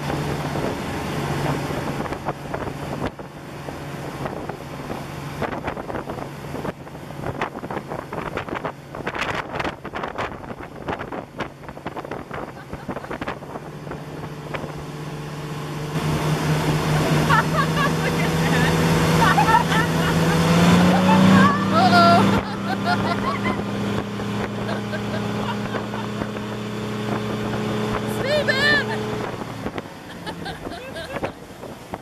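Motorboat engine running at speed while towing, with wind buffeting the microphone and wake water rushing. About halfway through the engine gets louder and its pitch climbs a step, then holds the higher note.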